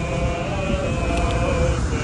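Voices singing a slow unison plainchant melody in held notes that step gently up and down, over a steady low rumble.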